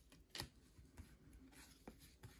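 Near silence, broken by two faint, brief sounds of baseball cards being handled and slid through the hands, one a little under half a second in and a softer one near the end.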